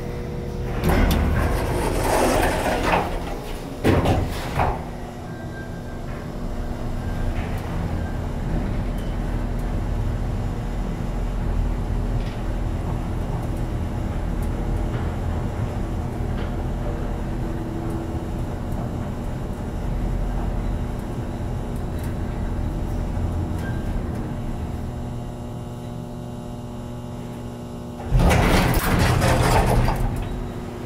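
1973 Otis traction elevator: the car doors slide shut and close with a knock about four seconds in, then the car travels with a steady low hum from its traction machine, and near the end the doors slide open again.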